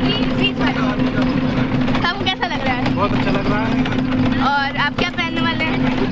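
People talking over the steady drone of a bus running on the road, heard from inside the cabin.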